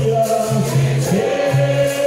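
Capoeira Angola roda music: berimbaus (musical bows) switching back and forth between two low notes, under a group singing the chorus.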